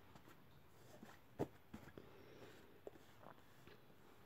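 Near silence with a few faint taps and rustles of tarot cards being drawn from the deck and handled.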